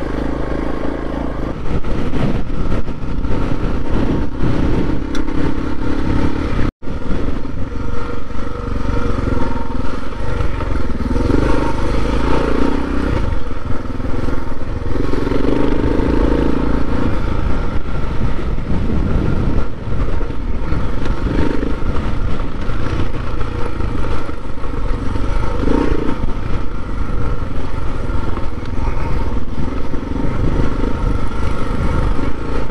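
Dirt bike engine running under way over a rough, rutted dirt track, its revs rising and falling as the rider works the throttle. The sound cuts out for an instant about seven seconds in.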